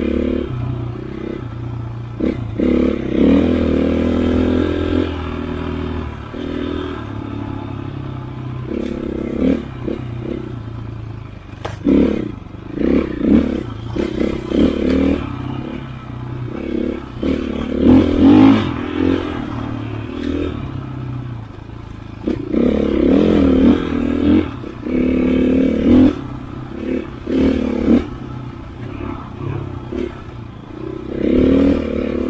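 KTM 500 EXC single-cylinder four-stroke enduro engine under riding load, revving up and down in repeated bursts of throttle, its pitch rising and falling, with occasional short knocks.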